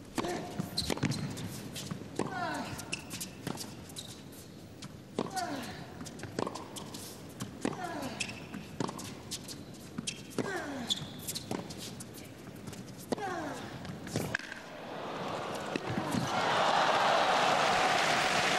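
Tennis rally on an indoor court: the ball is struck back and forth with racquets, a sharp hit roughly every second. Near the end, crowd applause swells as the point finishes.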